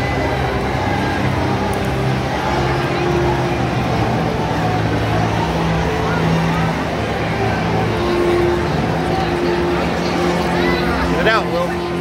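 Spectator crowd talking and calling out around a grappling mat, over a steady low drone. A brief raised voice rises out of the crowd near the end.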